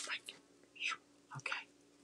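A woman muttering under her breath in a few short, soft bursts.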